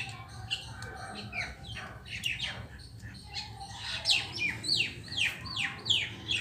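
Small birds chirping: a run of short, quickly falling chirps that come thicker and faster in the last two seconds.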